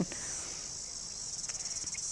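A steady, high-pitched insect chorus, a fine rapid pulsing buzz, with one faint click about one and a half seconds in.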